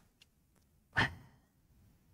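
A man's single sighed exclamation, "wah", about a second in, trailing off into a breathy exhale, picked up close by a headset microphone.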